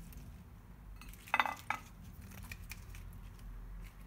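Crisp iceberg lettuce leaves being pulled apart and laid on toast, with soft crackles and rustles and a short squeak a little over a second in, repeated faintly just after, over a low steady hum.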